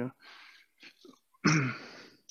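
A man clearing his throat, a sharp raspy vocal burst about one and a half seconds in that tails off, after a soft breath.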